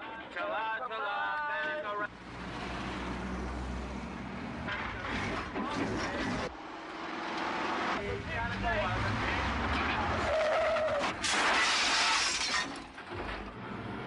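Car collision: vehicle engine noise, then a loud crash with breaking glass about eleven seconds in, the loudest moment, lasting over a second.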